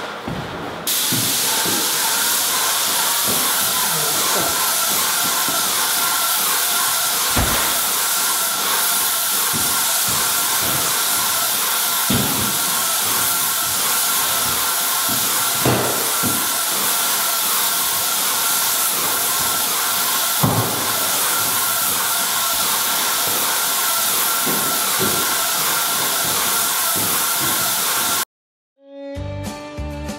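A Titan airless paint sprayer's gun spraying PVA primer onto bare drywall, giving a loud, steady hiss that starts about a second in. The hiss stays unbroken with the trigger held open, and a few faint knocks come through it.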